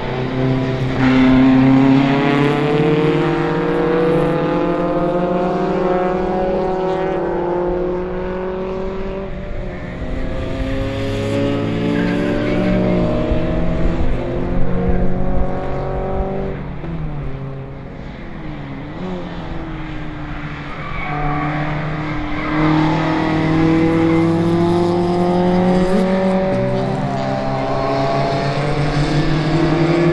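Several saloon race car engines accelerating out of a corner one after another, their notes climbing in pitch as they pass. The sound eases briefly a little over halfway through, then the next cars come through revving up.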